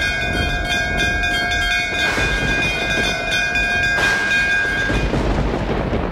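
Brass temple bells ringing over a steady low rumble. A fresh strike comes about every two seconds, and the ringing tones hang on between strikes.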